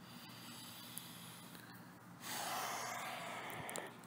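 A person taking one deep, audible breath lasting about a second and a half, starting a little past halfway and ending just before the close; before it, only faint hiss.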